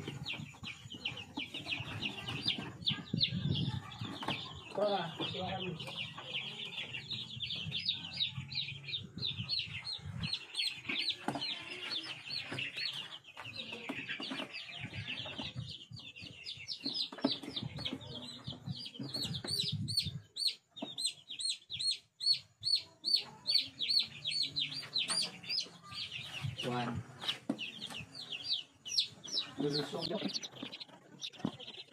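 A crate of young heritage chicks peeping: a near-continuous run of short, high, downward-sliding peeps from many birds, coming about two to three a second and most regular in the second half.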